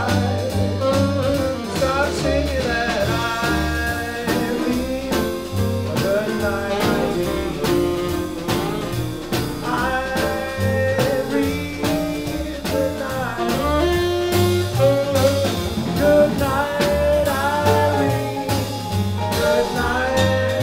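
A small jazz band playing live: a double bass walking a steady beat under piano and drums with cymbals, and a lead melody line on top.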